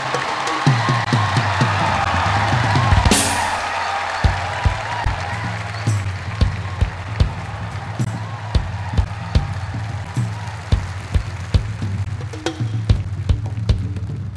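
Live rock band playing on a drum kit: a cymbal crash about three seconds in, then a steady kick-drum beat about two and a half hits a second over a low, sustained bass line.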